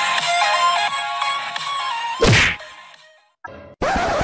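Upbeat intro music with a simple melody, cut off about two seconds in by a sharp whoosh-and-hit transition effect that dies away. A short burst of noise comes near the end.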